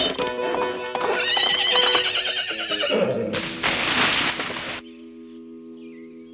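A horse whinnying with clopping hooves over busy dramatic music, then a loud burst of noise about four seconds in. The music settles into a quieter held chord near the end.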